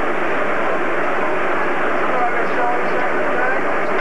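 Indistinct chatter of several voices over a steady, loud rushing noise.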